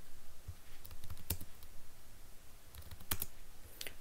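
Computer keyboard keystrokes: a few scattered key presses in two loose groups with pauses between them, as a line of code is edited and the compile and run commands are typed.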